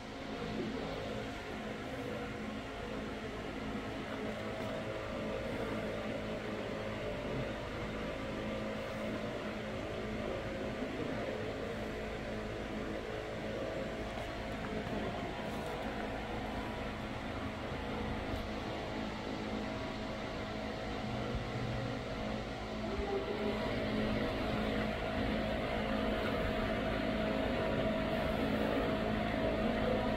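Steady mechanical hum with several held tones over an even rushing noise, growing a little louder in the last several seconds.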